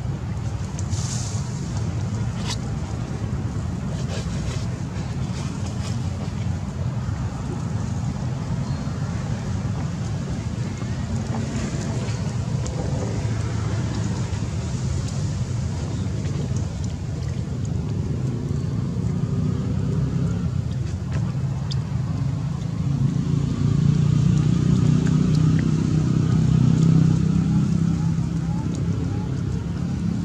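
Steady low rumble of outdoor background noise, swelling louder near the end, with a few faint clicks in the first seconds.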